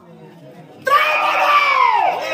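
A stage actor's loud, high-pitched, drawn-out cry, starting about a second in, holding its pitch and then falling away at the end.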